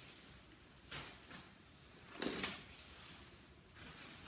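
Faint rustling and brief scuffing of disposable gloves being peeled off and handled over a protective coverall, with one louder rustle about two seconds in.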